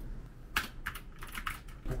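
Typing on a backlit gaming keyboard: a quick run of keystrokes starts about half a second in, as a search is typed in.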